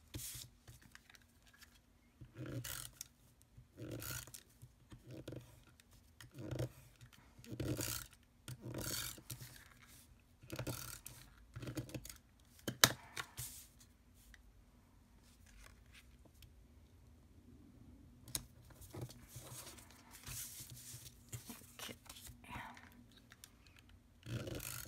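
Card stock being handled and slid across a craft mat while a hand-held tape runner is drawn along the back of paper panels, in a series of short strokes about a second apart. One sharp click about halfway through.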